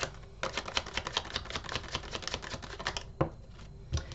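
A deck of tarot cards being shuffled by hand: a quick run of small card clicks and flicks lasting about two and a half seconds, then a single snap near the end as a card is drawn and laid down.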